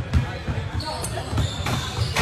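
Basketball bounced on a gym floor, a few low thumps as a player dribbles and gathers for a dunk, with a voice talking over it.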